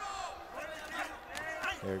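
Ringside voices shouting, several at once, under the bout, with a man's commentary cutting in near the end.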